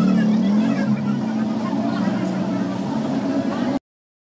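A steady low motor-like hum with people's voices over it; everything cuts off suddenly near the end.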